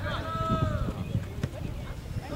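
Distant shouting voices of players and spectators across an outdoor soccer field, including one held call, over an irregular low rumble on the microphone.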